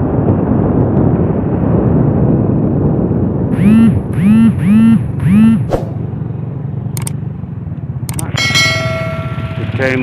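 Steady motorcycle engine and wind noise while riding. Over it plays a subscribe-button sound effect: four short rising-and-falling tones about halfway in, a few sharp clicks, then a bell ding near the end that rings on for over a second.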